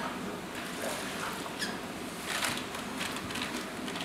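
Water going into a clear plastic aquarium bag, with a few short splashes and rustles of the plastic.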